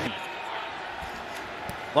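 Steady stadium crowd noise from a football broadcast, an even hum with no commentary over it.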